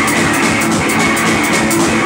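A rock band playing live and loud: a drum kit with cymbals keeping a fast beat under electric guitar.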